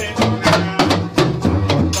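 Dance music with a steady, quick drum beat, about two beats a second, over a sustained bass line.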